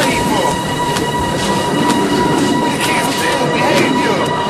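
Background music or sound-effect passage: a held high tone with sweeping glides and scattered clicks over a dense, noisy bed.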